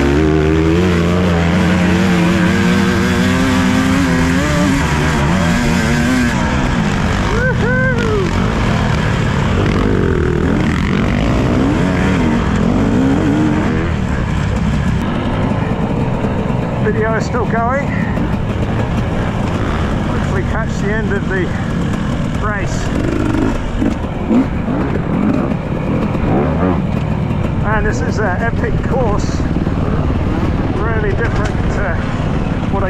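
2017 KTM 250 EXC two-stroke dirt bike engine running hard under load on a dirt and sand race track, its pitch rising over the first few seconds and then repeatedly rising and falling with the throttle.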